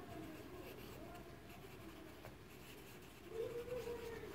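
Pencil writing on a textbook's paper page, faint scratching as a short phrase is written in the margin.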